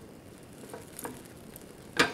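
Faint stirring in a pan: a few light taps and scrapes of a utensil against the pan.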